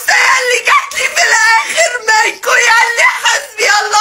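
A woman crying and wailing in a high, strained voice, half-speaking through her sobs, broken by short catches of breath.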